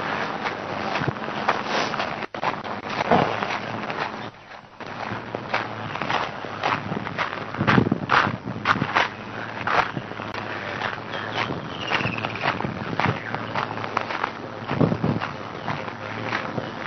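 Footsteps crunching along a sandy dirt footpath at a walking pace, short irregular steps with rustles in between. The sound drops away briefly about four seconds in.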